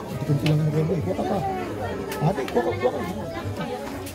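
Background chatter of several voices mixed with music.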